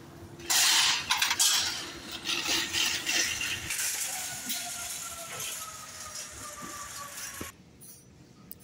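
Metal wire shopping cart pulled free of a row of nested carts with a loud clatter about half a second in, then rattling as it is pushed along the pavement.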